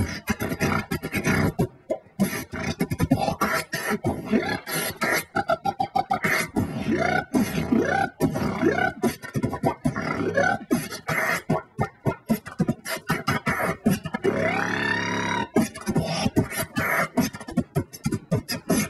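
Beatboxing into a cupped handheld microphone: a dense run of rapid percussive mouth sounds, with a held, wavering pitched vocal tone lasting about a second and a half some fourteen seconds in.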